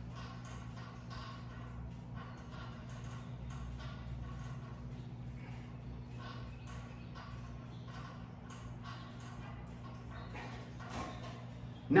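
Faint room tone: a steady low electrical hum under light, irregular clicks and taps, several a second.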